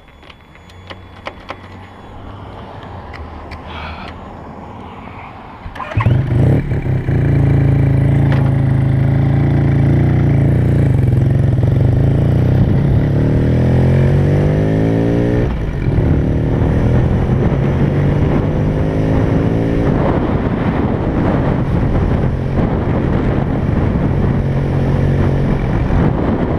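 1976 Suzuki RE5's single-rotor Wankel engine idling low, then pulling away about six seconds in with a sudden jump in loudness. Its pitch climbs, drops at a gear change, climbs again, then holds steady at a cruise.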